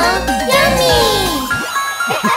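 Children's cartoon music with a tinkling sparkle effect, over which a cartoon character's voice calls out in long falling pitch glides, without words. About one and a half seconds in, quick wobbling vocal sounds begin.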